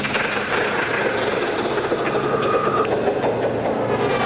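Psytrance track: a dense, rushing noise texture over steady low bass tones, with faint fast ticking on top and a short held tone in the middle.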